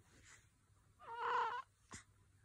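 A sleeping newborn baby gives one short, high-pitched squeaky cry, about half a second long, a second in, followed by a faint click near the end.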